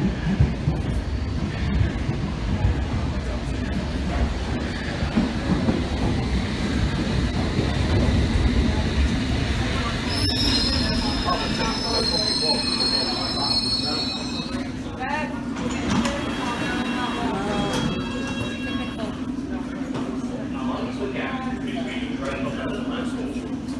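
London Underground S Stock train arriving at the platform: a loud rumble as it runs in, high brake squeal from about ten seconds in, then a steady low hum as it stands at the platform.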